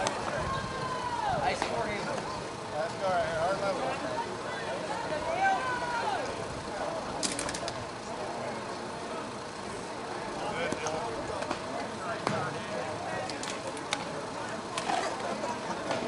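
Indistinct voices of players and spectators talking and calling out, louder in the first few seconds and fainter later, with a few sharp clicks about seven seconds in.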